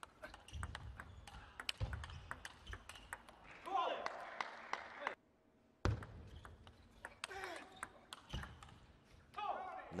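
Table tennis ball clicking back and forth off bats and table in rallies, a string of sharp ticks. A short silent gap breaks it about five seconds in.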